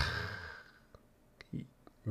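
A man's breathy exhale, loudest right at the start and fading over about half a second, followed by a couple of faint mouth clicks about a second and a half in.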